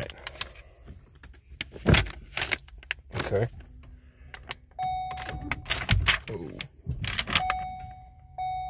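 Keys and a key tag jangling with clicks and two heavy thumps in a 2015 Ford Focus cabin, then the car's warning chime sounding a steady beep about five seconds in and again near the end.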